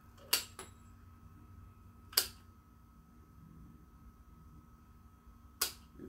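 Hand snips cutting through metal plumber's tape: three sharp snips, at about a third of a second in (with a smaller click just after), about two seconds in, and near the end.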